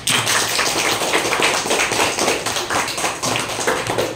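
Applause: a group of children clapping their hands, a dense, steady patter of claps that breaks out suddenly.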